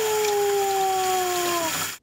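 Tap water running steadily into a steel sink, with a woman's long, high-pitched cooing voice that slides slowly down in pitch and stops shortly before the end.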